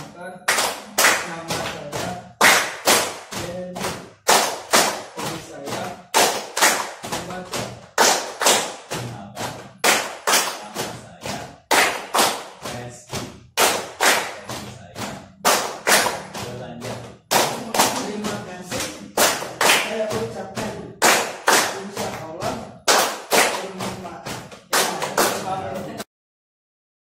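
A small group clapping hands together in a steady rhythm, about two claps a second, with voices sounding along underneath.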